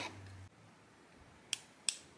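Two short, sharp clicks, about a third of a second apart, against a quiet room.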